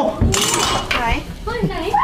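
A short mechanical rattle about a third of a second in, followed by a man's excited shouting.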